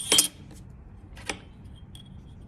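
A stainless steel ruler clatters as it is picked up off the table, with a brief high metallic ring. A lighter tap follows about a second later as it is set down.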